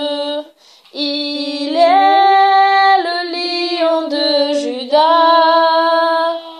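A woman singing a Christian worship song alone, unaccompanied, in long held notes. After a short breath near the start, her pitch steps up about two seconds in and comes back down around three seconds, then settles on another long note.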